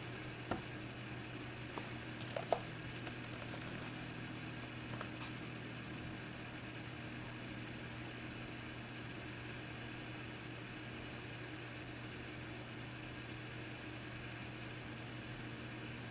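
Steady low room hum with a few faint clicks in the first five seconds, from a laptop touchpad as a Wi-Fi network is picked from a list.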